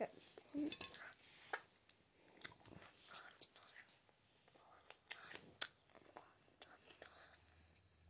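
A person chewing food close to the microphone: quiet, irregular wet clicks and small crunches, with one sharper click about five and a half seconds in.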